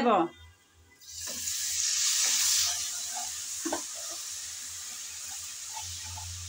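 Onion, garlic and spice masala sizzling in hot oil with a little added water in a non-stick kadai, stirred with a wooden spatula. The sizzle starts about a second in, is loudest soon after, then settles to a steady sizzle with a few light scrapes.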